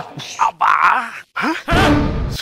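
A man's voice making short groaning, wordless sounds, followed near the end by a brief, loud low rumbling burst.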